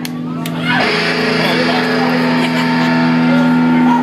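Rock band playing live on electric guitars and drums, with sustained chords ringing. The band swells louder and fuller about a second in.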